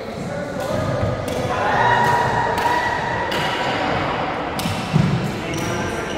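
Badminton rally: sharp racket strikes on a shuttlecock about once a second, with player footfalls on a wooden court and a heavier thud about five seconds in.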